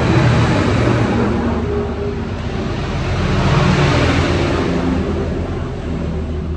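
A motor vehicle engine running close by, with rushing road-like noise that swells about a second in and again around four seconds in.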